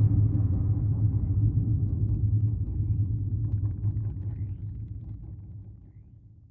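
Low rumbling drone from a documentary title sequence's dark sound design, fading out over about five seconds.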